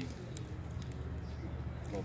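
Small wood fire in a homemade rocket stove crackling, with sparse short snaps over a steady low hum; the wood is nearly damp.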